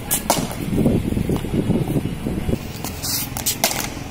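Cricket ball on a concrete pitch: several sharp knocks from the ball bouncing and being struck with a bat, with a cluster of them close together near the end.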